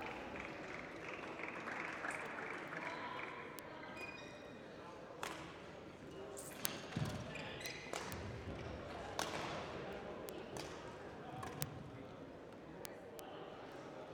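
A badminton rally in a sports hall: a dozen or so sharp, faint racket strikes on the shuttlecock and a few low thuds of footfalls, over a steady murmur of voices from the hall.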